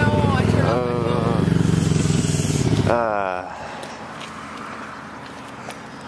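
A motor vehicle engine running with a low, rough rumble, which stops about three seconds in and leaves quieter background; brief voices sound over it.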